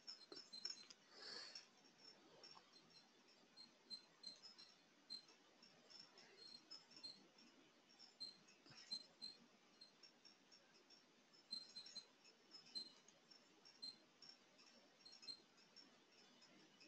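Near silence broken by faint, short computer-mouse clicks, a few a second at irregular spacing, as report pages are clicked through.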